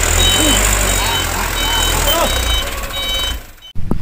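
A loaded dump truck's engine running with a deep rumble while its reversing alarm beeps again and again. The sound cuts off abruptly near the end.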